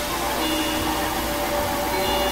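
Dense experimental noise music: a steady wash of hiss over a low hum, with a few held tones coming and going.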